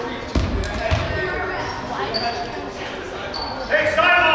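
A basketball bouncing twice on a hardwood gym floor, with the low thumps about a third of a second and a second in, under the chatter of players and spectators echoing in the gym.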